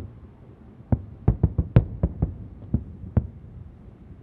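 Distant fireworks shells bursting: a quick run of about ten booms, bunched most closely a second or two in, with a steady low background between them.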